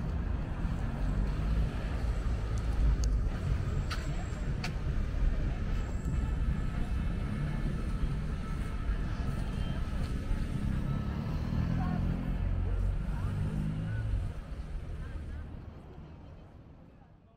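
City street ambience dominated by the steady low rumble of road traffic, with passersby talking and a few sharp clicks. It fades out near the end.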